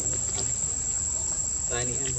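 Steady high-pitched insect drone, one unbroken tone, with a man's voice starting again near the end.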